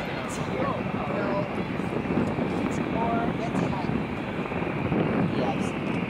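Rolls-Royce Trent 700 jet engines of a taxiing Airbus A330-343 heard from afar as a steady rushing noise, with faint voices around the middle.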